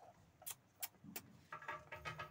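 Faint metal clinks of a buffalo's tether chain as the animal turns, three sharp clinks about a third of a second apart, then a low rumble near the end.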